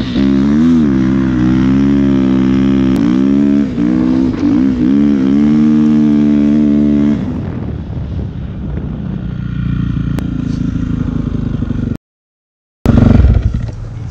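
Dirt bike engine running hard, its pitch rising and falling as the throttle is worked, then settling to a lower, rougher note about seven seconds in. The sound cuts out for a moment near the end and comes back loud.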